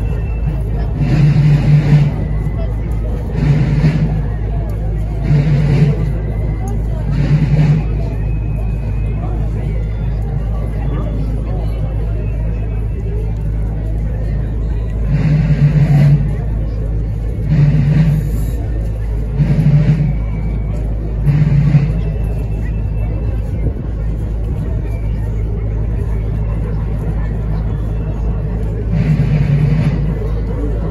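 Marching band bass drum beating a slow step: four heavy strokes about two seconds apart, a pause of several seconds, four more, then the beat starting again near the end. Crowd chatter and a steady low rumble run underneath.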